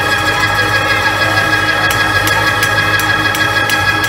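Church music: a held organ chord over a steady low bass note, with light percussion taps coming in about halfway at roughly three a second.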